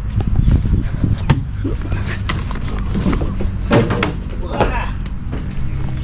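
Scattered knocks and clatter, the sharpest about a second in, with two brief stretches of unclear voice in the middle, over a steady low hum.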